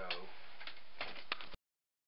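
A brief man's voice sound, then a handful of sharp, irregular clicks, after which the sound cuts off abruptly to dead silence a little past a second and a half in.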